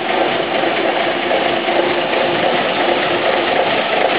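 Six-cylinder diesel engine of a 1970 Škoda 706 RTHP fire tanker running steadily as the truck drives slowly forward.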